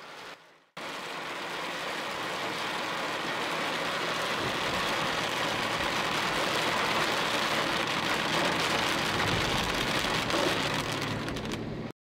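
Steady rain falling on a car's windshield and roof, heard from inside the car. It starts abruptly about a second in, grows slowly louder, and cuts off suddenly just before the end.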